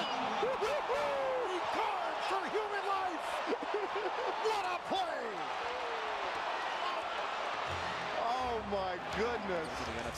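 Basketball game sound from an arena: steady crowd noise with many short, squeaky chirps of sneakers on the hardwood court and ball bounces.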